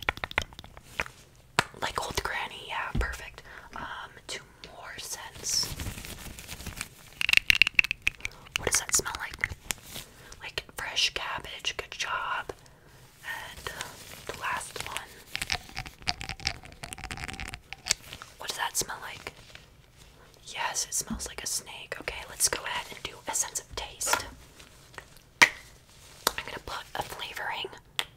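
Close-up whispering with short pauses, mixed with occasional small clicks and taps as glass perfume bottles are handled in gloved hands.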